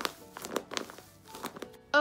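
A paper squishy covered in clear packing tape and stuffed with fiberfill, crinkling as hands squeeze it: a run of short, irregular crackles, over soft background music.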